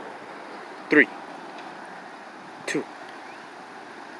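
A man's voice counting down "three… two" over a steady outdoor background noise.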